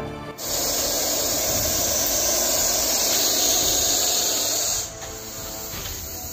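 Russell's viper hissing: one loud, steady warning hiss lasting about four seconds. It breaks off sharply near the end, leaving a fainter hiss.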